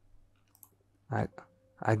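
A few faint clicks of a computer mouse in a quiet room. A short vocal sound follows about a second in, and a man's speech begins near the end.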